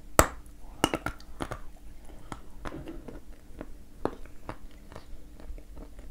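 A piece of dense, dry edible clay (the 'Ryzhik' or 'Podsolnukh' variety) is bitten off with a sharp crack just after the start, then crunched and chewed with irregular small clicks.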